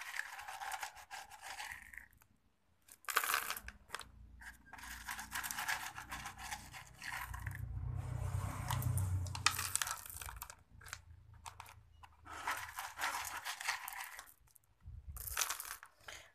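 Small decorative pebbles rattling and clicking against one another and a plastic pot as they are added and pushed into place by hand, in about five bursts of a few seconds each with short pauses between.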